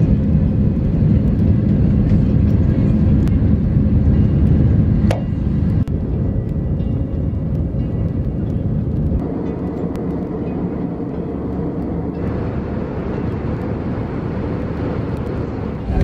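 Steady loud rumble of a jet airliner's engines and airflow heard from inside the cabin, dropping a little in level about five seconds in and again about nine seconds in.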